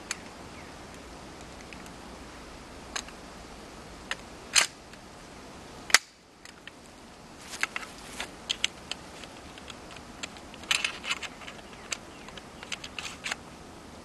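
Metallic clicks and rattles of a gun's action being worked, with a sharp click about six seconds in as the firing pin strikes the primer of a powderless 7.62x54R cartridge: a misfire, the old primer dented but not going off. A run of lighter clicks follows.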